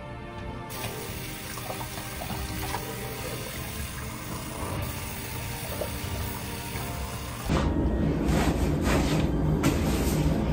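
Tap water running into a bathroom sink and splashing as a shaved head is rinsed under it, over quiet background music. Near the end it gives way to a louder stretch of knocks and rustling.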